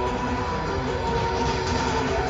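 Distorted electric guitar holding a ringing chord through a concert PA, heard as a steady, dense wash of sound over crowd noise, with no drums.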